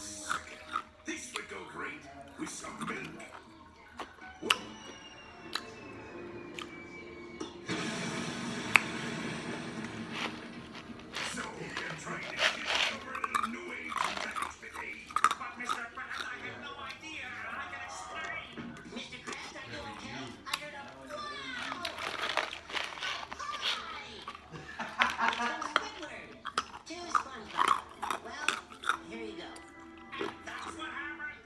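Television audio playing: voices and music, with sharp clicks close by.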